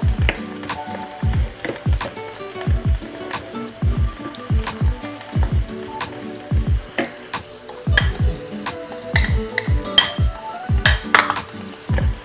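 Chopped garlic and onion frying in butter in a pan, sizzling as they are stirred with a spatula that clicks against the pan now and then. Background music with deep bass notes plays over it.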